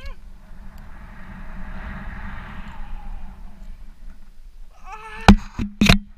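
Wind rushing over a handheld action camera's microphone as the rope swings, rising and falling over a couple of seconds. About five seconds in, a woman's short vocal sound, then two sharp, very loud knocks on the camera half a second apart.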